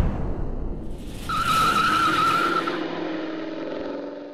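Logo intro sound effect: a car's rumble, then a wavering tire squeal lasting about a second and a half over a steady lower hum, fading out at the end.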